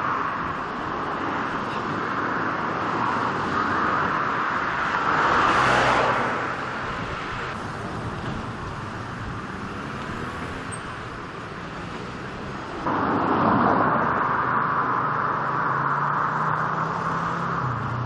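Outdoor street ambience of steady road traffic, with one vehicle swelling louder about five to six seconds in. The background changes abruptly twice, near seven and thirteen seconds.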